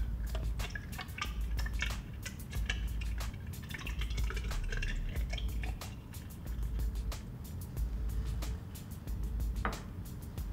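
Sodium thiosulfate solution poured from a glass beaker through a plastic funnel into a burette, trickling and dripping with many small drip sounds, then a short knock near the end.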